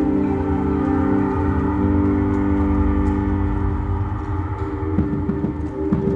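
An indoor percussion ensemble's show music: a sustained, gong-like drone of held tones over a low rumble, slowly thinning out. Low drum strikes start about five seconds in.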